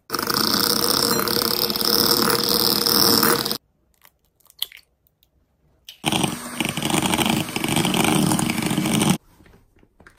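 Electric hand mixer with wire beaters running in a glass bowl, creaming butter and sugar: two steady runs of about three and a half and three seconds, the second beating in an egg. A few faint clicks fall in the short gap between them.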